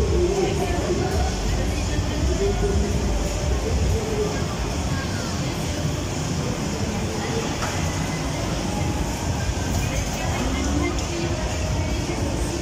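Bumper car ride running: a steady low rumble of the electric cars rolling over the metal floor, with fairground music and voices mixed in.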